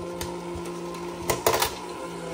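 The small battery-powered electric motor of a 1950s W Toys Japan Fishing Bears Bank tin toy running with a steady hum, while its tin mechanism gives a few clicks and clatters, most about a second and a half in.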